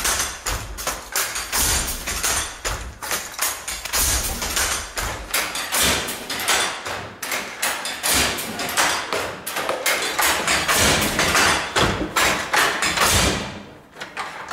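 Wooden Jacquard handloom weaving, a fast, uneven clatter of wooden knocks and thumps: the din of the loom in action.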